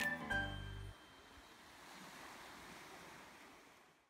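The last notes of a short music jingle, ending about a second in, then small sea waves washing softly onto a sandy beach, fading out at the end.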